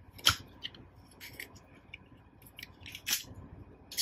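Sharp plastic clicks and snaps from a Transformers Ultra Magnus action figure as its chest panels are unlatched and swung open to reveal the Matrix compartment. There is one strong click a fraction of a second in, a cluster of smaller ones in the middle, and another strong click about three seconds in.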